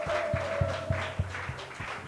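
Audience clapping along to background music with a steady beat of about three thumps a second, over a held note that fades out a little over a second in.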